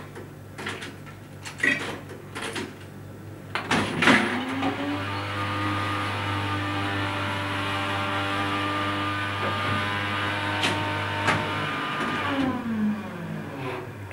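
Jackson Vending hot-drinks machine: a few clicks at the coin and selection panel, then the machine runs with a steady motor hum for about eight seconds while it dispenses a cup of coffee. Its pitch rises as it starts and falls away as it stops.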